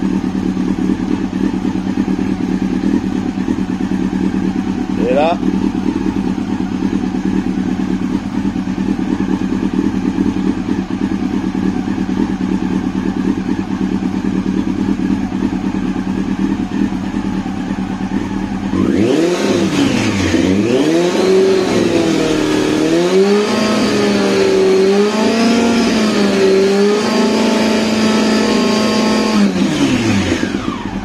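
Yamaha R6 motorcycle's inline-four engine idling steadily, then revved up and down repeatedly from about two-thirds of the way in and held at higher revs near the end. It is running so the charging circuit can be tested with a newly fitted voltage regulator, and the circuit is charging properly.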